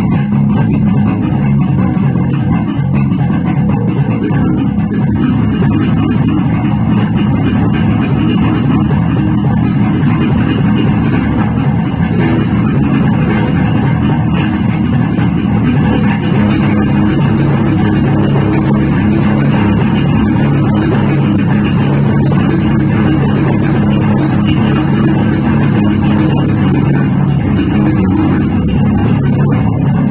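Four-string electric bass played fingerstyle in a continuous jazz-funk groove, with its notes strongest in the low range.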